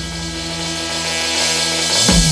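Live band holding one sustained chord, with a steady hiss of high noise over it; new notes come in near the end.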